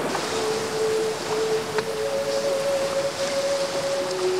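Water rushing steadily out through a prawn pond's opened sluice gate, under background music of long held notes, a lower note giving way to a higher one about halfway through.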